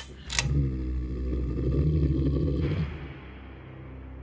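Horror-style logo sting sound effect: a short sharp hit, then a deep low rumble with a droning hum that drops away about three seconds in, leaving a faint low hum.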